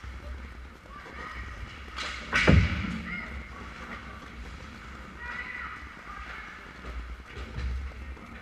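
Ice hockey play at the goal mouth: one loud, sharp crack of stick and puck about two and a half seconds in, over a low rink rumble with scattered knocks from sticks and skates and faint distant voices.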